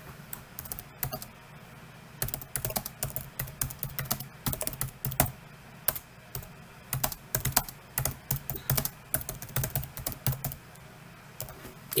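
Computer keyboard typing: quick runs of key clicks broken by short pauses, as a one-line note is typed.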